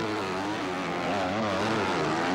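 Motocross bike engines revving hard on a dirt track, the pitch rising and falling every half second or so as the throttle is worked through corners and jumps.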